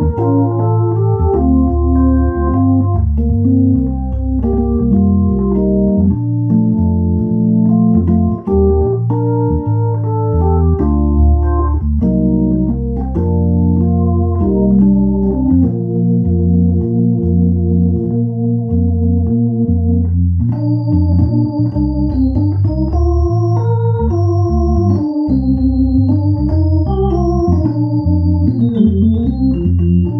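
Hymn played on a Viscount digital organ with a Hammond-style tone, in a jazz and blues style: sustained chords over a moving bass line. About two-thirds of the way through, a high melody line of single notes comes in above the chords.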